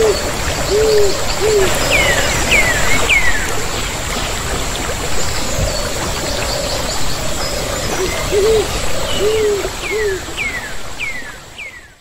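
Steady rush of a waterfall, with a bird hooting in short groups of two or three and another bird giving falling whistled calls in runs of three. Everything fades out at the end.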